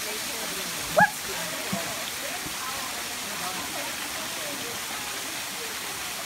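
Steady rushing of a shallow creek running over rock ledges, with a short, loud rising sound about a second in.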